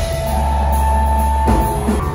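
Live rock band playing loud, heard from within the audience: electric guitar, bass and drum kit, with heavy bass and a long held high note, and a drum hit about one and a half seconds in.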